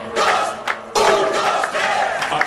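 A group of voices shouting together in two calls, a short one at the start and a longer one from about a second in, while the dance music's beat drops out.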